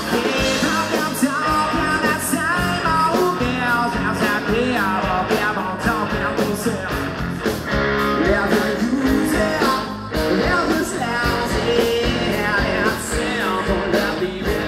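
Rock band playing live with electric guitars, bass and drums, a lead melody bending up and down in pitch over a steady loud groove.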